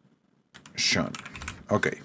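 Computer keyboard typing: a quick run of keystrokes that starts about half a second in.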